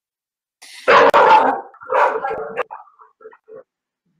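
Dogs barking: two loud barks about a second apart, then a few short, fainter ones.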